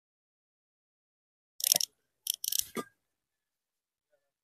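Loose fired-clay bricks scraping and knocking against each other twice in quick succession, a short grating noise followed by a longer one.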